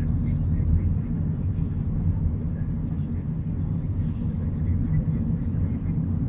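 Car driving along a country road, heard from inside: a steady low rumble of engine and road noise, with a soft hiss that comes back every couple of seconds.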